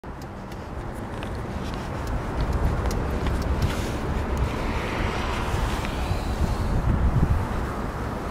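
The 2003 Honda Pilot's V6 engine running steadily with the hood open, with wind buffeting the microphone.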